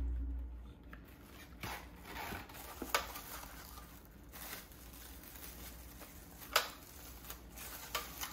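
Faint kitchen handling noises: light rustling with a few sharp clicks or taps, the loudest about three seconds in and again near seven seconds.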